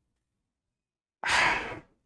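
A man's single audible sigh, a long breath out lasting just over half a second, starting a little over a second in after near silence.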